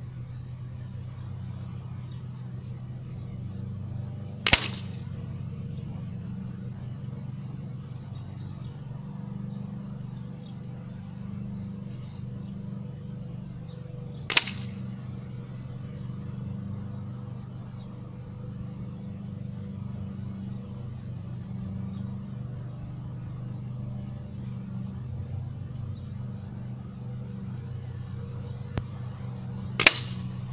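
Three sharp cracks, about ten and fifteen seconds apart, as .177 pellets from a pre-charged pneumatic air rifle strike a paper target on a wooden post, over a steady low hum.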